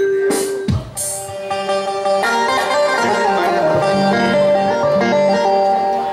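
Instrumental music with a melody of held, stepped notes on an electronic keyboard. Two short noisy hits come in the first second.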